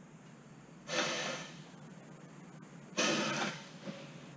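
Pneumatic rivet squeezer cycling twice, each stroke a short sharp hiss of air, about two seconds apart.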